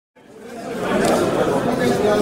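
Background chatter of many overlapping voices, fading in from silence over about the first second.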